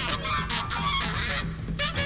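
Saxophone overblown into harsh, honking squeals in free-jazz improvisation, with piano and percussion underneath.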